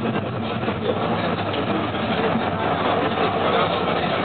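Rheinbahn tram car 2664 running along its track, heard from inside the car: a steady rolling rumble.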